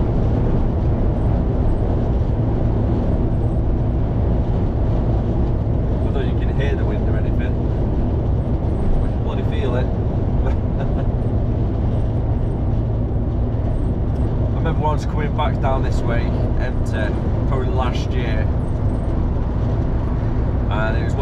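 Steady low drone of a lorry's engine and tyre and road noise heard inside the cab at motorway speed.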